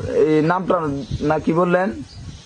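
Speech only: a person talking in short phrases with no other clear sound.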